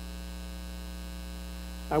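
Steady low electrical mains hum in the recording, unchanging through the pause, with no other sound over it.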